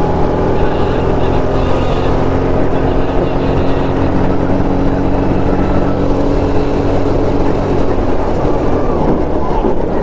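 Go-kart engine running steadily at speed, heard from the driver's seat, its pitch holding level and then wavering near the end.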